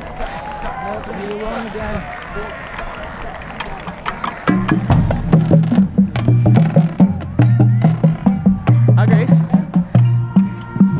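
Voices for the first four and a half seconds, then a marching drumline starts playing: tuned bass drums in a quick rhythm stepping between low pitches, with sharp stick and snare strokes.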